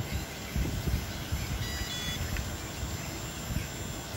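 Electric water pump and electric fuel pump on a model V12 engine's test rig running steadily while fuel pressure builds, with an uneven low rumble underneath.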